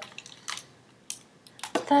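A few light clicks and knocks, about half a second and a second in, as a small handheld fetal heartbeat listener is handled and set aside. A woman starts speaking near the end.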